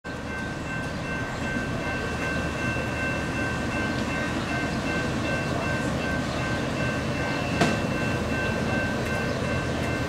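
CSX mixed freight train approaching, a steady low rumble with a faint held chord of high tones above it. A single sharp click comes about seven and a half seconds in.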